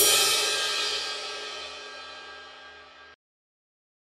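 Crash cymbal hit in an intro music sting, ringing out and fading steadily, then cut off suddenly about three seconds in.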